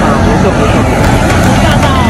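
Loud, gusty low rumble of wind buffeting a phone microphone during a bicycle ride, with indistinct voices underneath.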